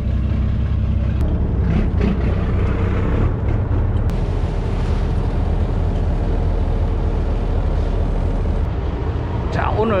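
Charter fishing boat's engine running steadily under way, a low, even drone with water noise from the hull.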